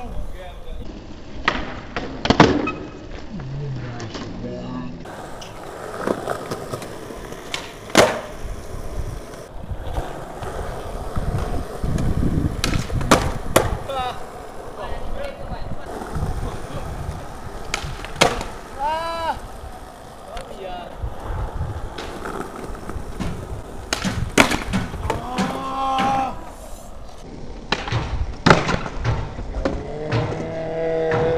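A skateboard with Spitfire Formula Four wheels doing flat-ground tricks on smooth concrete: wheels rolling, the tail popping and the board slapping and clattering down in a series of sharp cracks, the loudest about 2 and 8 seconds in. A few brief shouts come in the second half.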